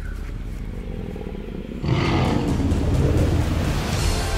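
Tyrannosaurus rex roar: after a low rumble, a loud, rough roar comes in about two seconds in and carries on.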